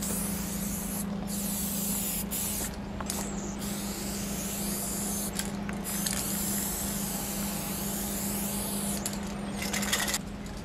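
Aerosol spray paint can hissing in several long bursts with short breaks between them, as the nozzle is pressed and released.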